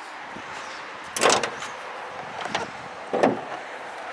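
Two metallic clunks, one about a second in and a louder-sounding one about three seconds in, with a lighter knock between: a Chevrolet S10 Blazer's hood latch being released and the hood lifted open.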